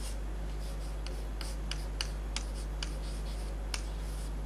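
Chalk on a blackboard while an equation is being written: a series of short, irregular taps and scratches over a steady low hum.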